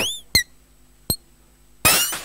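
Live-coded electronic music thinning out to sparse sounds: a short falling chirp at the start, then three sharp clicks with brief high pings, evenly spaced, over a faint low hum.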